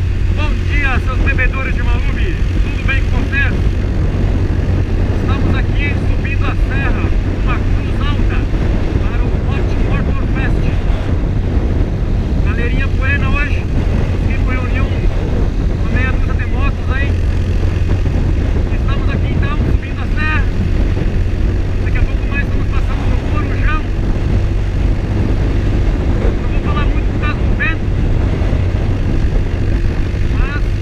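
Motorcycle engine running at a steady cruise with wind rushing past, a continuous low drone. Short bursts of higher, warbling sound come over it every few seconds.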